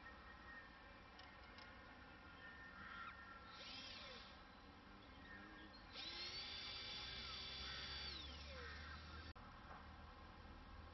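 Electric drill turning a homemade glider-winch drum, switched by a foot pedal. There is a short rising whine about three and a half seconds in, then about six seconds in the motor cuts in with a steady high whine for about two seconds before it winds down. The launch fails, and the owner blames a drum that is too small.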